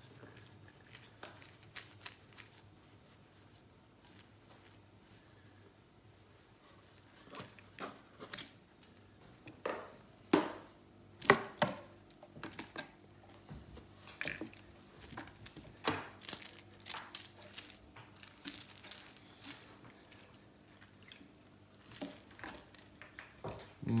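Irregular scratching, rustling and crinkling close to the microphone, with scattered sharp clicks. They are sparse at first and come thicker and louder from about a third of the way in, with the loudest clicks near the middle.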